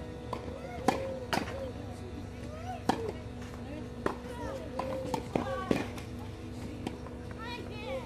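Tennis ball being hit back and forth with rackets and bouncing on a clay court during a rally: a string of sharp, irregularly spaced pocks, the loudest about a second in.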